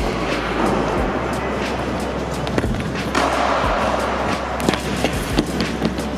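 Scooter wheels rolling over a skatepark's concrete floor and wooden ramp, with several sharp knocks and clatters in the second half as the dizzy rider and scooter go down.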